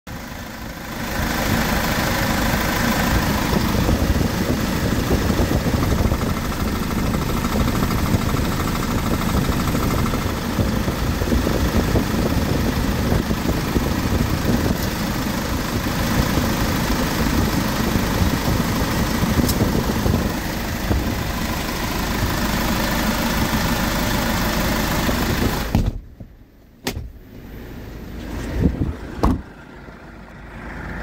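Kia Bongo truck's diesel engine idling steadily, heard close up with the engine bay open. The sound drops sharply about 26 seconds in, followed by a few short knocks.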